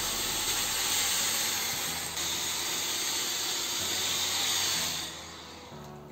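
Fakir Verda steam-generator iron blowing a continuous jet of steam: a steady hiss that dies away about five seconds in.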